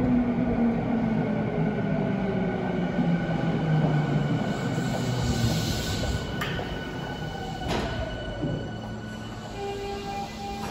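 Tokyu electric commuter train pulling into an underground platform and braking to a stop. Its rumble carries tones that fall in pitch as it slows, and two sharp clicks come late on.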